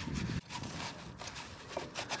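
Faint scraping and a few light ticks as something is poked around the thermostat-housing seal groove in the cylinder head to clean it out.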